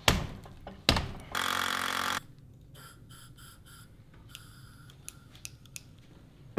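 Two solid thunks on a wooden bow-laminating form, then a short hiss of compressed air from an air chuck, the sound of the hose bladder in the form being inflated to press the laminations, followed by a few faint ticks.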